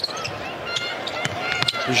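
Basketball dribbled on a hardwood arena court, a few sharp bounces, with short high sneaker squeaks over the arena background noise.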